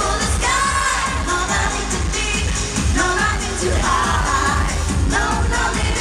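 Live pop dance music played loud through a concert PA, with a woman singing into a microphone over a steady dance beat.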